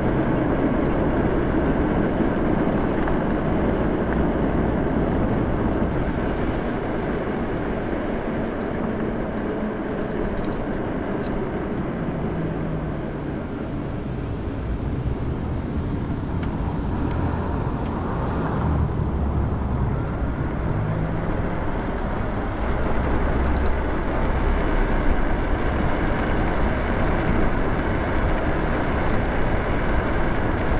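Wind rushing over the microphone and tyres rolling on asphalt as an e-bike is ridden at about 20 mph: a steady rush with gusty low buffeting.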